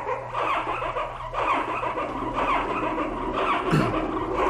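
Six overlapping playbacks of one recorded sound sample, rendered by Csound through the Ounk Python library. Each copy is transposed by a random factor between 0.9 and 1.1, so the copies stack into a dense, wavering layered texture at slightly different pitches.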